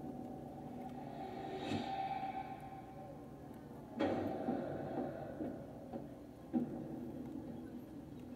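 Television soundtrack under the programme's talk: low held droning tones, a rushing swell about two seconds in, and a sudden hit about four seconds in, with a smaller one a couple of seconds later.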